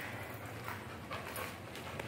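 A sedated Belgian Malinois panting softly.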